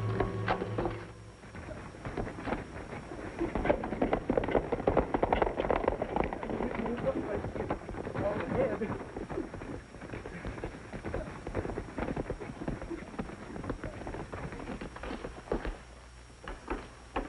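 Horses' hooves galloping on dirt, a dense, irregular run of hoofbeats that thins out after about ten seconds as a horse is reined in.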